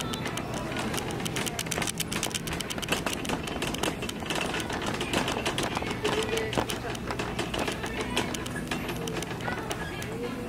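Shopping cart rolling through a store aisle, its wheels and basket rattling in a continuous run of quick clicks, over a steady low hum.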